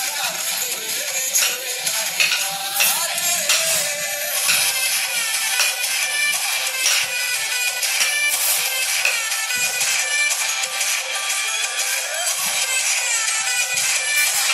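Indian dandiya dance music with a steady beat playing, thin-sounding with very little bass.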